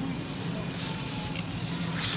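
Supermarket ambience: a steady low hum with faint background voices and a few light clicks of handling.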